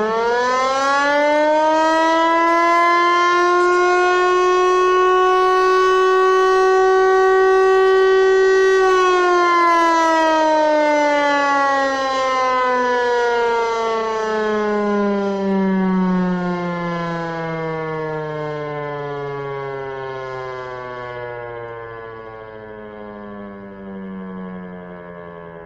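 Eclipse 8 tower siren sounding its noon blast, the daily signal: it finishes winding up in the first couple of seconds, holds one steady high pitch until about nine seconds in, then winds down slowly, its pitch and loudness falling gradually through the rest.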